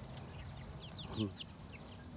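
Chickens calling softly: a run of short, high, falling peeps, with one lower call a little after a second in.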